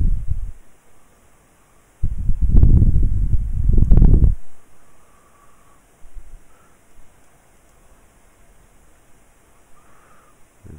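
Low rumbling noise on the microphone in two loud bursts, the second about two seconds long, then only faint background hiss.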